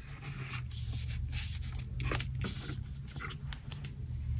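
A wooden craft stick rubbed along the fold of a small paper booklet to crease it: several scratchy rubbing strokes and paper rustles with a few light taps, over a low steady hum.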